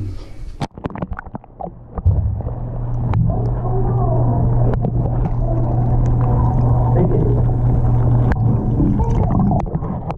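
Muffled underwater sound of bathwater picked up by a camera held below the surface: a few splashes and knocks as it goes in, then from about two seconds in a steady low rumble with faint wavering tones.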